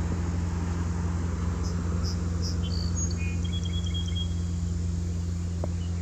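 A steady low hum, with a few faint high-pitched chirps between about one and a half and four seconds in.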